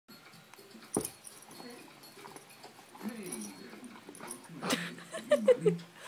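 A Brittany spaniel whining in short pitched bursts as it snaps at a laser dot on a carpet, with a sharp knock about a second in and another near the end as it pounces. The whines are loudest near the end.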